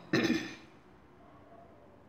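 A woman clears her throat once, briefly, right at the start.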